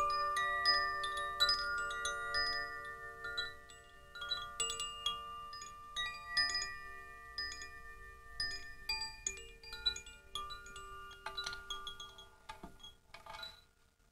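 Wind chimes ringing: irregular strikes of several clear metallic tones that hang and fade, growing sparser near the end.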